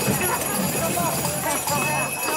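Crowd of costumed mummers parading on foot, many voices talking and calling at once, with scattered knocking sounds mixed in.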